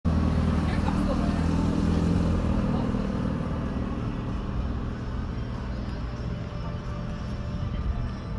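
Street sound: a car engine running close by for the first couple of seconds, then dying away into general traffic noise with voices in the background.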